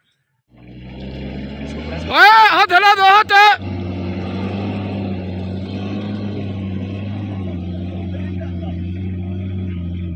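Toyota Land Cruiser Prado 4x4 engine held at steady high revs as the vehicle strains up a slippery, muddy track, the climb it cannot make. About two seconds in, a man gives a loud, wavering shout lasting a second or so.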